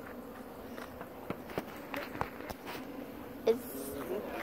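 Footsteps in foam clogs walking over wood mulch and onto concrete: a few soft, irregular scuffs and taps over a faint steady hum.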